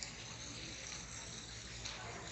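Outdoor ambience of a pedestrian plaza: a low, steady hiss of background noise with a faint click at the start and another near the end.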